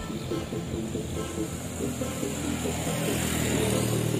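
A road vehicle running, its noise swelling toward the end, mixed with background music.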